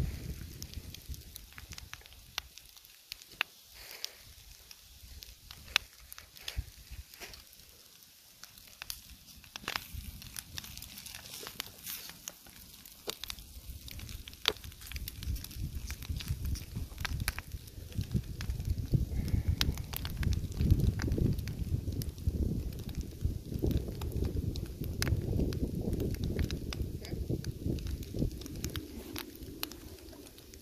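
Bacon and eggs frying in a pan over a small wood campfire, with scattered sharp crackles and pops over a faint sizzle. From about halfway, a gusty low rumble of wind on the microphone comes in and grows louder.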